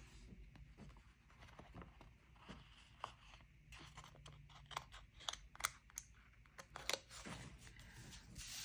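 Faint clicks and crinkles of a paper sticker being lifted off its sheet with metal tweezers and handled, with a run of sharper ticks from about halfway through.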